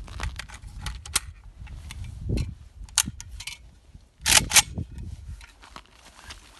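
AK-pattern carbine being loaded by hand: a run of sharp metallic clicks and rattles as the magazine goes in and the action is worked, with two loud clacks close together about four and a half seconds in.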